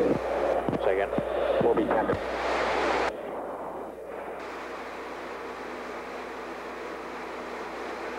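Garbled radio voices cut off abruptly about three seconds in. What remains is a steady rushing noise inside an F-15 fighter cockpit in flight, from airflow and engines.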